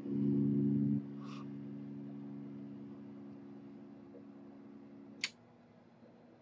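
Additel ADT761 automated pressure calibrator's internal pressure controller humming as it brings the pressure down from about 50 psi toward zero for the next test point. The hum is loud for the first second, then quieter and fading, and stops with a sharp click a little after five seconds in.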